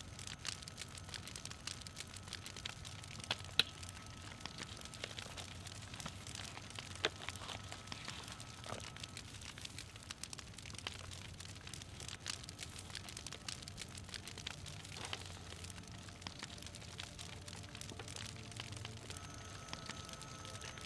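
Faint, irregular crackles and clicks, typical of a campfire burning, over a steady low hum. Faint sustained tones come in during the second half.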